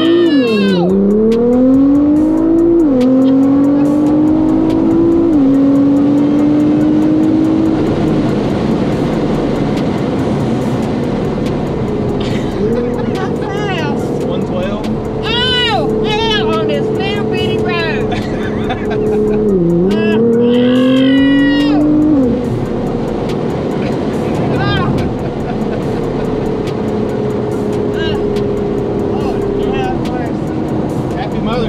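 Tuned car running on E85, full bolt-ons, accelerating hard: the engine note climbs and drops back with three quick upshifts in the first eight seconds, then holds a steady drone at speed. About twenty seconds in, the pitch dips and climbs again in a second short pull before the driver lifts off. A woman passenger shrieks and exclaims over the engine.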